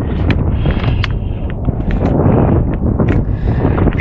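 Wind buffeting the action camera's microphone: a loud, steady low rumble, with a few light clicks scattered through it.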